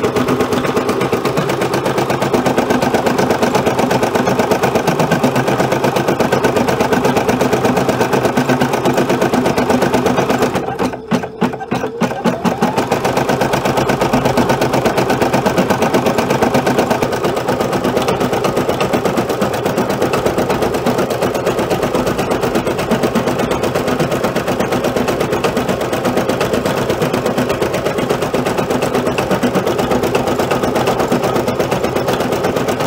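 Brother Innov-is F480 embroidery machine stitching a light-density design, the needle running in a fast, steady rhythm, with a brief break about eleven seconds in.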